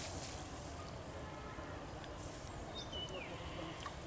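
Steady low outdoor rumble as a cast net is handled in shallow pond water, with a brief soft splash of water about two seconds in and a faint falling chirp about three seconds in.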